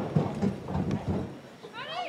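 Outdoor game ambience: a low, muffled rumble, then high-pitched shouted calls near the end.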